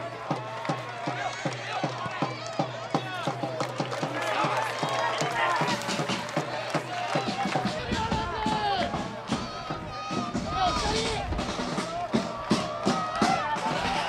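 Football supporters chanting and singing together to a steady drum beat.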